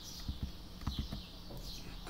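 Several soft, low taps in quick little groups, with faint high chirps behind them.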